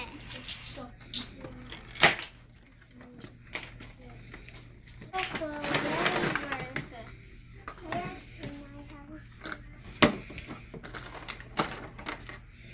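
A cardboard toy box being opened and its plastic parts tray pulled out and handled: scattered clicks, taps and knocks, the sharpest about two seconds in and again near the end. A child's voice is heard briefly in the middle.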